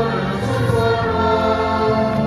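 Choir singing church music: voices holding long, slow notes over a bass line that moves in sustained steps.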